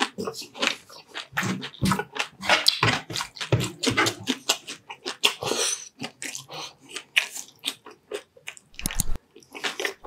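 Close-miked crunching and chewing of crispy deep-fried chicharon bulaklak (pork mesentery), a rapid, irregular run of crunchy bites.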